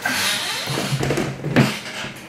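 A loud, brief rustle of hands handling material close to the microphone, dying down after about half a second into quieter handling noise.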